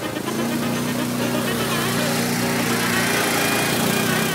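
A GOES quad's engine running as it ploughs through muddy water and thick mud, with background music playing over it.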